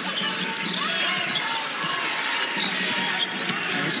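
Live basketball game sound in an arena: a ball dribbling on the hardwood court and the steady murmur of the crowd, with short squeaks of sneakers.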